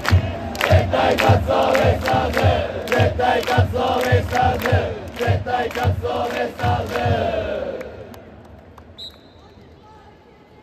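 Japanese pro-baseball cheering section chanting a player's cheer song in unison over a steady drum beat of about two beats a second. The chant stops about eight seconds in, leaving a low crowd murmur.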